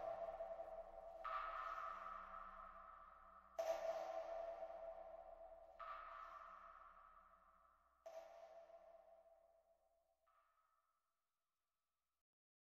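Closing notes of an ambient instrumental track: five sparse ringing tones, each starting sharply and dying away. Each is fainter than the one before, fading out to silence shortly before the end.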